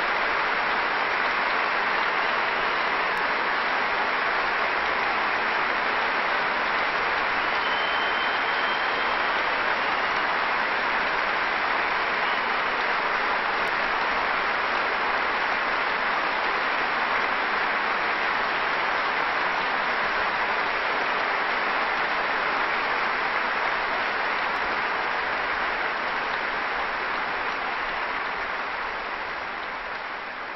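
Large audience applauding steadily, a sustained ovation that fades a little over the last few seconds.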